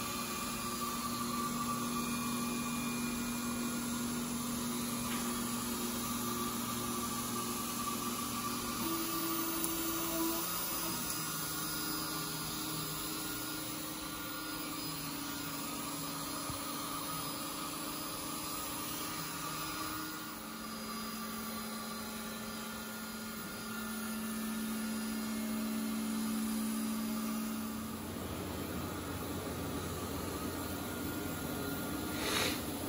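Large-format Modix Big-120X 3D printer running a print: its stepper motors whine as the print head moves, the tone jumping to a new pitch every few seconds as the moves change speed, over a steady hiss.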